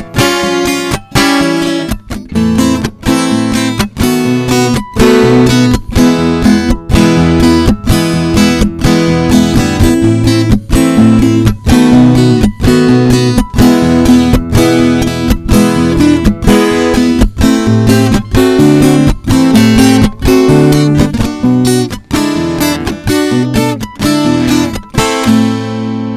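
Twelve-string acoustic guitar (Caraya F-64012BK) strummed in a steady rhythm with no voice, the instrumental close of the song; near the end the strumming stops and the last chord is left ringing.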